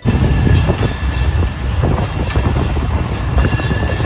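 Ride noise from an open-sided tourist road train on the move: a loud, steady rumble with a faint high whine above it.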